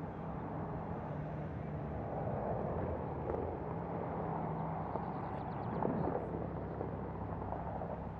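A vehicle engine idling steadily at a constant low hum over an even background rush.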